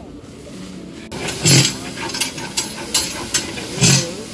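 A long-handled ladle stirring and scraping inside a large aluminium cooking pot, starting about a second in, with repeated scrapes and knocks against the metal, two of them loud.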